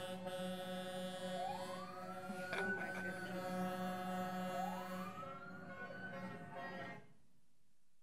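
Music playing with a siren-like whoop that rises and levels off, heard twice about three seconds apart over steady tones. It all cuts off about seven seconds in.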